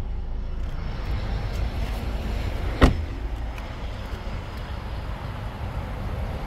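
A car door, on a 2020 Hyundai Elantra, shut once with a sharp knock about three seconds in, over a steady low rumble.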